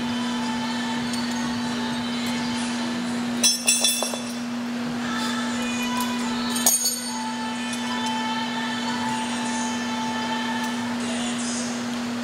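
Gym cable machine's metal weight-stack plates clanking: a short cluster of metallic knocks with a ringing after them about three and a half seconds in, and one more clank near seven seconds. A steady low hum runs underneath.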